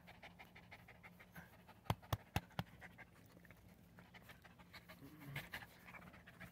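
A dog panting fast and close. Four sharp clicks come about two seconds in.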